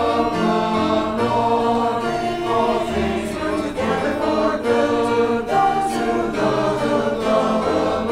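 Mixed adult church choir singing an anthem in parts, with notes held and the harmony moving steadily.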